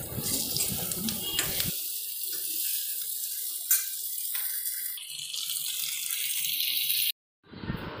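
Green chillies sizzling in hot oil in an iron kadhai, a steady hiss, while a steel spatula stirs them, with one sharp metal clink a little past halfway. The sizzle cuts off suddenly shortly before the end.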